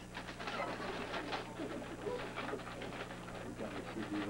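Wrapping paper crinkling and rustling as a present is unwrapped, with soft murmured voices and a steady low hum underneath.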